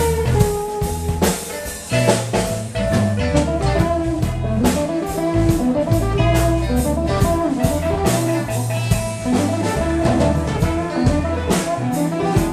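Live band playing an instrumental passage: electric guitar picking a melodic line over electric bass and a drum kit keeping a steady beat, with no singing.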